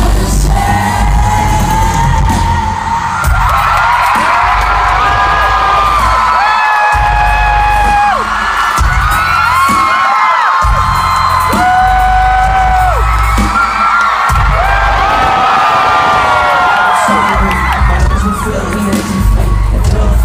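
Live amplified music heard from within a concert crowd: heavy bass under a voice singing long held notes, with crowd whoops and cheers mixed in. The bass drops out briefly about halfway through.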